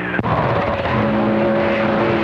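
CB radio receiver on the 11-metre band giving a click as the last transmission drops, then steady static hiss. Several steady tones join about half a second and a second in, the beat of overlapping carriers.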